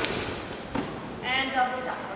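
A trampoline bounce thump as the gymnast takes off into a double back somersault, then a softer thud under a second later. A voice speaks briefly near the end.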